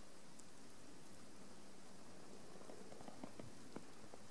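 Faint, steady outdoor background hiss with a few light ticks in the second half.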